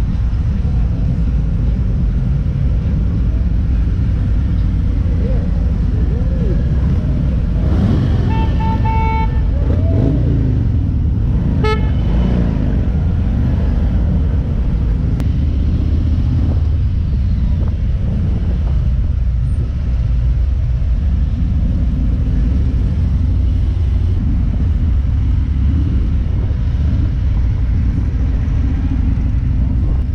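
Harley-Davidson motorcycle engines rumbling at low speed in a slow-moving group. A horn beeps several times in quick succession about eight seconds in, and once more briefly a few seconds later.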